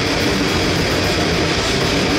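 Loud live grindcore band playing: heavily distorted bass and electric guitar over drums, making a dense, unbroken wall of sound.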